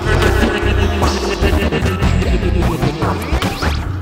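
Psybient downtempo electronic music with a steady beat, deep bass and layered synth tones, punctuated by sharp percussive hits.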